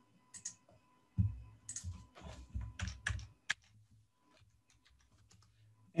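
Computer keyboard being typed on: a short run of keystrokes entering a number into a spreadsheet cell, ending about three and a half seconds in.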